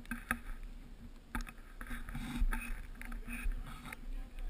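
Irregular crunching and scraping on icy snow, with several sharp knocks and a low rumble of wind or handling on the microphone.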